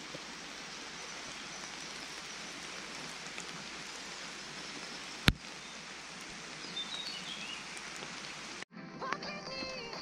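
Steady rain falling, an even hiss, with one sharp click about halfway through. Near the end the rain sound cuts off abruptly and music begins.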